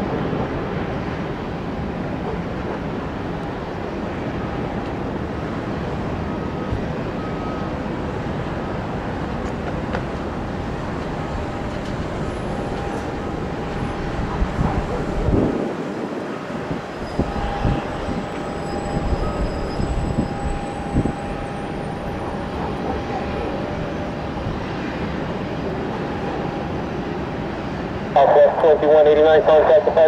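Boeing 737 MAX 8 jetliner's engines on final approach, heard at a distance as a steady rushing with a faint, steady whine. Radio speech comes in near the end.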